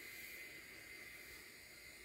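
Near silence: a faint steady hiss of line noise on a recorded phone call.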